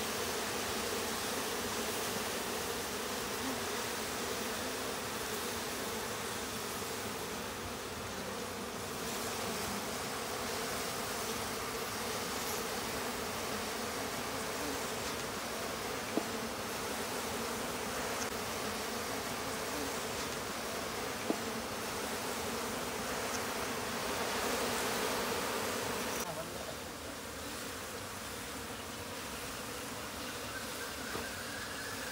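A swarm of honeybees buzzing steadily around an opened wooden hive box as a low, even hum. Two brief clicks come in the second half.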